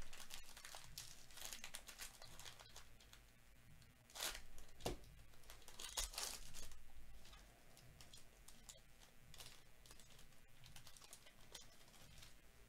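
Foil wrapper of a Topps Series 1 baseball card pack being torn open and crinkled by gloved hands, with two louder bursts of ripping about four and six seconds in.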